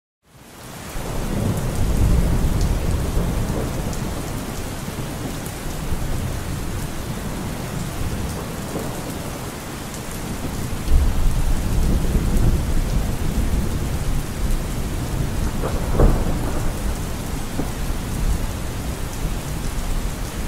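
Steady rain with rumbles of thunder, fading in at the start, and a sharper thunderclap about sixteen seconds in.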